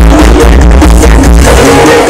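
Very loud live band music with a heavy, deep bass beat.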